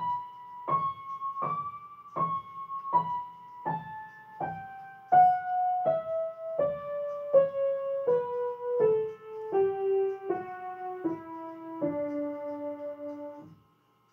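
Yamaha upright piano, right hand playing a D major scale over two octaves, one note at a time at an even, slow pace. It reaches the top D about a second and a half in, then steps down note by note to the low D, which is held for about a second and a half before stopping near the end.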